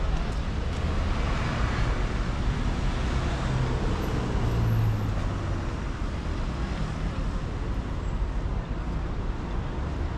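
City street traffic: a steady rumble of vehicles on the road, with one engine passing closer and louder about four to five seconds in, then easing off.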